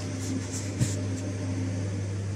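HP ProCurve zl-series modular switch's cooling fans running with a steady hum just after power-up, while the switch boots and runs its self-test. A small click sounds just under a second in.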